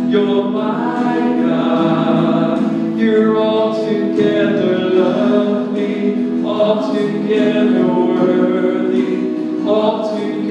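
A man singing a slow worship song into a microphone, holding long notes.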